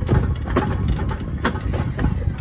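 Electric wheelchairs rolling along a paved walkway: a steady low rumble of motors and tyres, with a few short knocks as the wheels go over bumps in the path.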